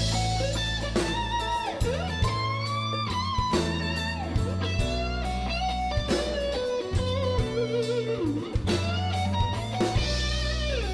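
Electric guitar solo, its notes bending and sliding in pitch, over a slow band backing of bass and drums.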